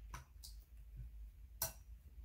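A few faint, sharp clicks of a plastic spoon knocking against a glass bowl while slime is scooped out, the loudest one near the end.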